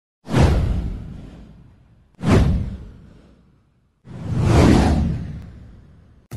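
Three whoosh sound effects from a news-video intro, each a full, deep swell of rushing noise that fades away over a second or two; the first two start abruptly, the third, near the end, builds up more gradually.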